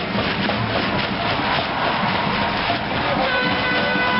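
Parade band music: a few held horn-like notes over a dense, steady rattling clatter.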